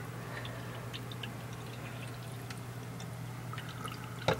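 Water from an old aquarium filter trickling and splashing down a small homemade sluice made of half a drainage pipe with a ribbed rubber mat. Under it runs a steady low hum from the filter's motor.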